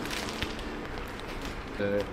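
Low steady background noise with one short click about half a second in; a voice says "uh" near the end.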